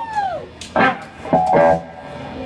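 Electric guitar played loosely before the song: a falling gliding tone dies away at the start, then two short plucked notes or chords ring out, about a second in and again about a second and a half in.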